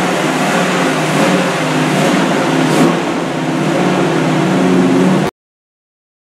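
Freshly rebuilt small-block Chevrolet V8 with Holley Sniper EFI running steadily on its first start-up, a new camshaft and aluminum heads being run in. One brief click about three seconds in; the sound cuts off suddenly about five seconds in.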